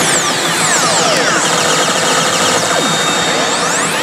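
A HEY! Elite Salaryman Kagami pachislot machine playing electronic effect sounds: falling sweeps, then a fast repeating chime pattern, then rising sweeps near the end, over the pachinko hall's din.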